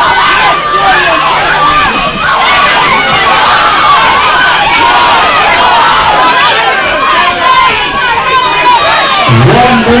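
Boxing crowd shouting and cheering, many voices yelling at once. A single nearer voice speaks near the end.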